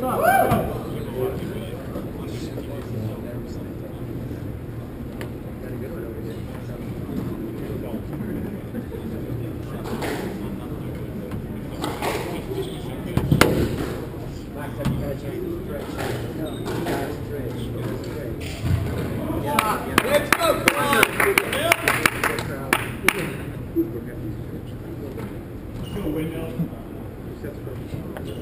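Squash ball smacking off racquets and the court walls during a rally, sharp hits a second or two apart, thickest in the second half. Spectators' voices call out and chatter over it.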